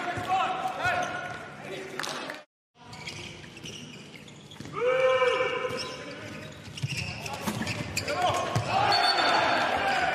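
Indoor handball match in a near-empty sports hall: the ball bouncing on the court floor, with players shouting. One long held shout comes about five seconds in. The sound drops out for a moment about two and a half seconds in.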